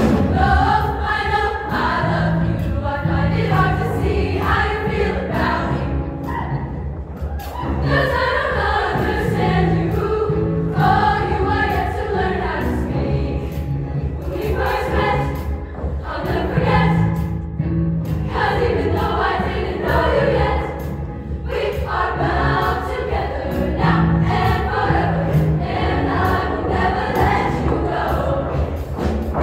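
Women's show choir singing in full harmony with a live show band, a steady bass line underneath. The singing comes in phrases of a few seconds with brief lulls between them.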